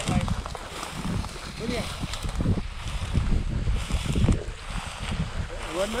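Dry tallgrass brushing and crackling against someone walking through it, with wind buffeting the microphone in irregular low rumbles.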